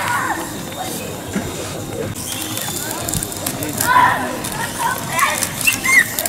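Children's voices calling out over a steady outdoor street hubbub; no clear sound from the flying toy stands out.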